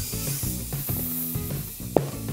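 Compressed air hissing steadily from a shop inflator into a tubeless fat-bike tire as it is pumped up to seat the bead, under background music. A single sharp click sounds near the end.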